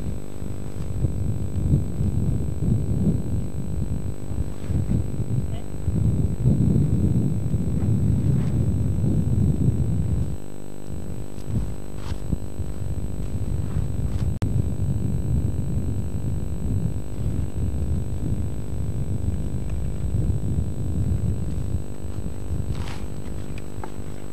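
Low, continuous rumble of a running engine, uneven in level and loudest a few seconds before a brief dip about ten seconds in.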